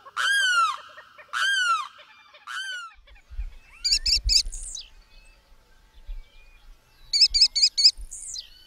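Limpkin giving three loud, drawn-out wailing calls, each sliding down in pitch, in the first three seconds. Then an American kestrel's rapid, high, repeated 'killy' notes follow: a quick run of three about four seconds in and a run of five near the end. A low rumble is heard around three to four seconds.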